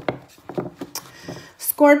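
Tarot cards being handled and laid out by hand: a few light, separate clicks and taps of card stock against card and table.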